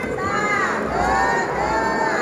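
A crowd of young children shouting together, many high voices overlapping with calls that rise and fall in pitch.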